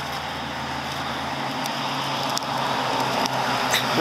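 Road traffic going by: a steady wash of car noise that slowly grows louder, as if a vehicle is approaching.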